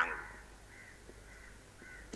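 A man's voice through a microphone ends a sentence, then a pause with only faint outdoor background sounds.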